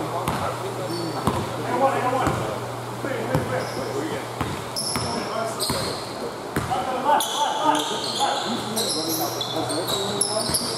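A basketball being dribbled on an indoor court, bouncing about once a second. Sneakers squeak on the court floor in the second half as players move.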